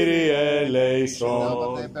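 Greek Orthodox liturgical chant: a single man's voice singing long, held melismatic notes, with a short break about a second in before the line goes on.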